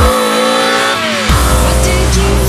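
A BMW E30 rally car's engine driven hard through a corner, heard together with loud electronic drum-and-bass music. The pitch falls about a second in.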